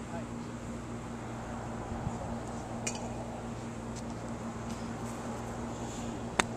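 Steady low outdoor background hum with a few faint, sharp clicks, the clearest about three seconds in.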